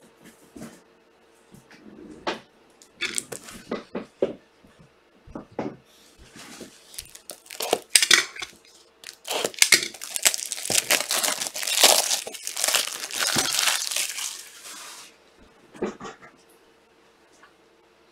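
Plastic wrapping on an Ultra Pro card-holder pack crinkling and tearing as it is opened. Scattered clicks and taps of handling come first, then several seconds of dense crinkling that stops suddenly about three seconds before the end.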